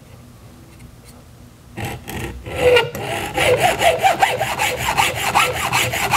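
Hacksaw cutting through aluminium compressed-air pipe. Quick rasping back-and-forth strokes, about five a second, start about two seconds in, each with a wavering ringing tone from the blade and pipe.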